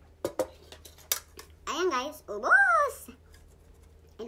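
A few sharp clicks of tableware being handled, followed by two drawn-out wordless vocal sounds from a woman, each rising and falling in pitch, the second louder.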